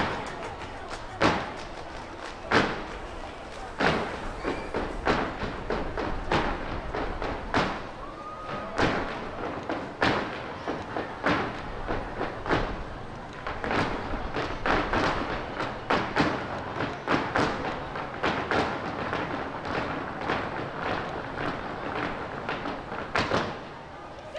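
Flamenco footwork: the dancers' shoes stamp on the stage floor in rapid, irregular runs of sharp strikes, with music fainter underneath.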